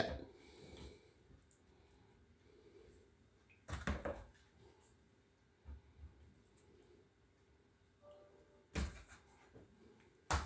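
Faint handling knocks and clinks as raw chicken wings are hung on a chrome wire wing rack, twice more plainly, about four and nine seconds in; otherwise a quiet room.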